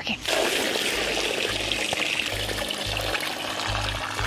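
Maple sap pouring from a jug into a steaming evaporator pan, a steady splashing pour, under background music with low bass notes.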